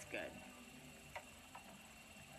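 Quiet room tone with a faint steady hum, broken by two small clicks a little over a second in, a third of a second apart.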